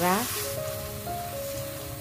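Sliced button mushrooms and onion sizzling as they sauté in a stainless steel pan, under soft background music with a few long held notes.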